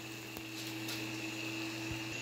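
Steady background hum with a faint hiss, with a couple of faint soft knocks, one early and one near the end.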